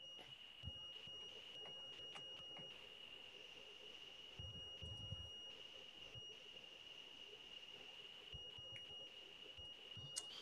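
A faint, steady high-pitched whining tone on a video-call audio line, which one participant puts down to a bad ground in someone's headphones or microphone.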